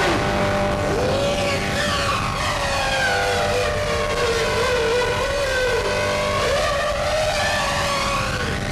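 Harsh noise music: a dense, unbroken wall of electronic noise over a low steady drone, with a wavering, warbling whine in the middle range and arching tones sweeping up and down above it.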